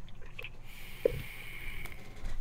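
A sub-ohm vape being drawn on: a steady airy hiss of the coil firing and air pulled through the device, with a faint high whistle, starting about half a second in and stopping just before the end. A brief soft click comes about a second in.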